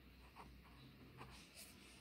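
Near silence with a few faint strokes of a felt-tip marker writing a word on a whiteboard.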